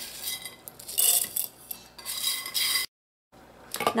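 Dry toasted cardamom pods tipped from a pan, rattling and clinking into the stainless-steel bowl of a KitchenAid blade spice grinder in several bursts. The sound cuts off suddenly about three seconds in.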